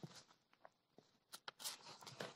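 Near silence: room tone with a few faint short clicks in the second half.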